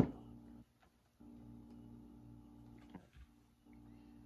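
Wooden drop spindle flicked into a spin by hand, adding ply twist: a sharp click as it is set going, then a steady low whirring hum. The hum drops out briefly about a second in, stops with another small click near three seconds, and starts again shortly before the end.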